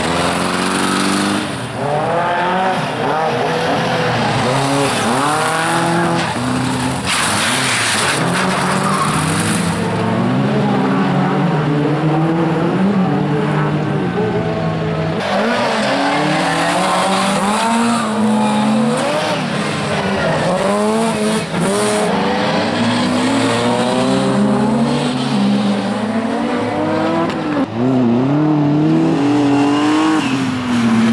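Bilcross race cars driven hard through a bend, their engines revving up and dropping back again and again with gear changes as one car follows another.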